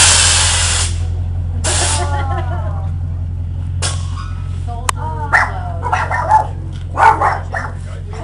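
1980s Chevy pickup's engine running with a steady low rumble as the lowered truck pulls away. A loud hiss lasts nearly a second at the start and a shorter one follows about two seconds in.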